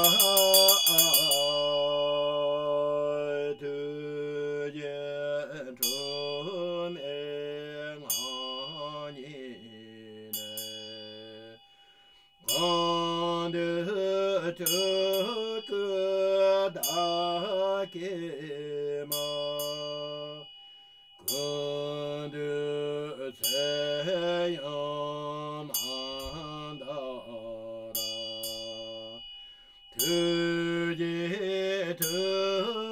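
A voice chanting a Tibetan Buddhist long-life mantra in a slow, sustained melodic line, the phrases breaking off briefly about twelve and twenty-one seconds in. A small bell is struck repeatedly over the chant, each strike ringing on high tones.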